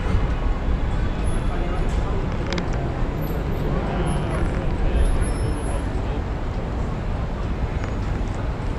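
Busy city street noise: passing road traffic under a steady low rumble of wind on the microphone of a moving camera.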